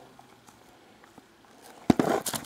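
Faint handling noise from a shrink-wrapped trading-card box, then one sharp knock near the end as the box is handled.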